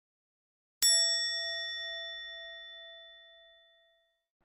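A single bell-like ding, struck once just under a second in and ringing out with a slowly fading tone for about three seconds: an editing sound effect under a text caption.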